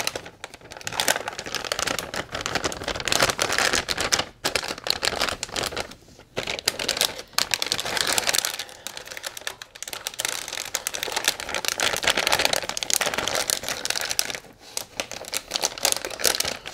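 Large metallised anti-static bag crinkling and rustling as hands handle and open it, in irregular bursts with a few short pauses.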